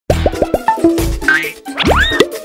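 Cartoon logo jingle with sound effects: a quick run of about five plops as the animated letters drop in, a few short tones, then a rising whistle-like glide near the end.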